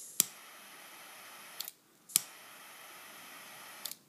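S.T. Dupont Maxijet jet lighter fired twice: each press gives a sharp click of the piezo igniter followed by a steady high hiss of butane for about a second and a half, ending with a small click as the button is released.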